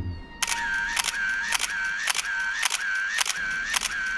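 A fast, evenly repeating pattern of sharp clicks, about three a second, each followed by a short high tone, starting about half a second in.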